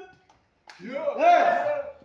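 Speech only: voices calling out a count, "two, two, two", loud after a short pause.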